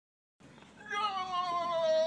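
A single long wailing cry, starting about a second in and slowly falling in pitch for over a second.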